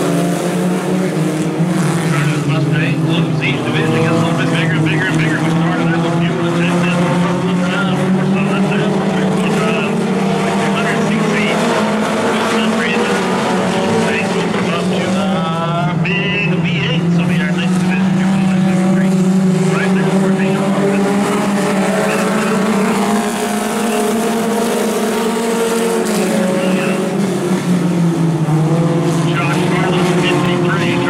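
A pack of mini stock race cars running laps on a dirt oval, several engines sounding at once, loud and continuous, their pitch rising and falling as they accelerate and lift off.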